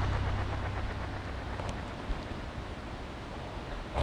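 Steady background noise: a low rumble under a soft hiss, with no clear event apart from a faint tick about two seconds in.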